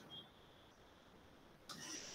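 Near silence: faint room tone during a pause in the talk.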